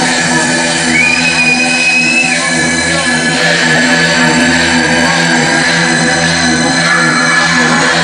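Loud, distorted industrial hardcore electronic music over a rave sound system: a dense, noisy wall of sound with steady droning tones. About a second in, a high held tone comes in briefly.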